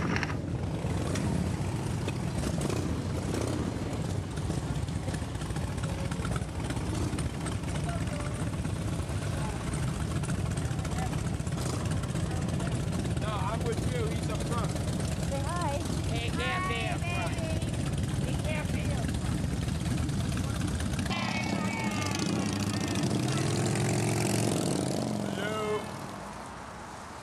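Cruiser motorcycle engines running as the group rides, a dense low rumble with voices calling over it. About 21 seconds in the engine rumble stops and only voices are heard.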